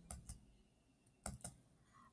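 A few faint, short clicks in two small groups, one just after the start and another about a second and a quarter in, over near silence: computer key or mouse presses, as when advancing a presentation slide.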